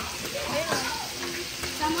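Pork belly sizzling on a tabletop samgyupsal grill, a steady hiss, with faint voices chattering in the background.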